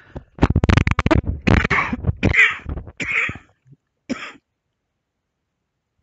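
A person coughing and clearing their throat: a long, rapid throat-clear about half a second in, then four shorter coughs, the last about four seconds in.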